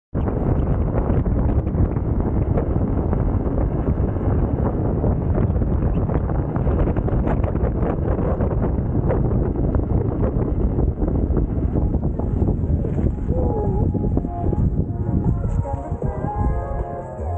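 Heavy wind buffeting on the microphone of a camera moving with the riders, a steady loud rumble throughout. Faint music begins to come in over it in the last few seconds.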